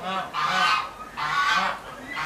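A bird calling twice in a row, each call long and nearly a second in length.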